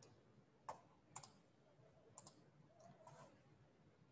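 Near silence broken by a few faint clicks of a computer mouse, the first about two-thirds of a second in and the last just past two seconds.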